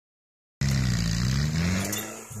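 A motor vehicle engine running loudly, cutting in just over half a second in, its pitch rising slowly.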